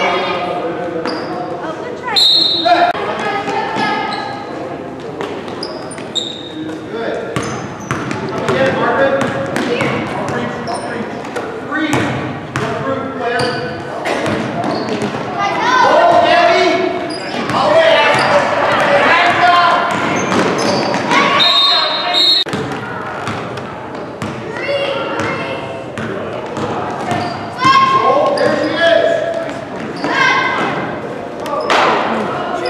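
A basketball being dribbled and bouncing on a hardwood gym floor, amid shouting voices of players and spectators, echoing in the large hall.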